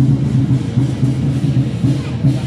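Loud music dominated by a pulsing bass line, its notes repeating about four times a second.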